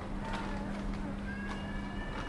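Footsteps clicking on paving stones, about two a second, over a steady low hum that fades out near the end. A brief high-pitched tone comes in during the second half.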